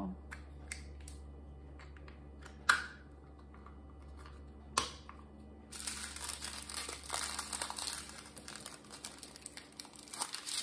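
A few sharp clicks, then small plastic bags of diamond painting drills crinkling and rustling steadily as they are handled, from about halfway through.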